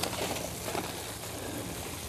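Faint crackling and rustling of soil and roots as a hosta clump is pulled apart by hand, over a low steady background hiss.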